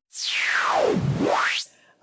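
White noise from the Noise sound colour effect (CFX) of a Pioneer DDJ-400 running Rekordbox DJ, swept by the CFX knob. The hiss falls from very high to low over about a second, rises back up quickly, then cuts off suddenly near the end.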